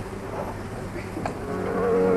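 Harmonium holding a steady, reedy drone in a pause between sung phrases. The group's singing builds back in about a second and a half in.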